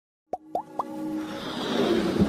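Three quick pops, each sliding upward in pitch, about a quarter second apart, followed by a whoosh that swells in loudness: the sound effects of an animated logo intro.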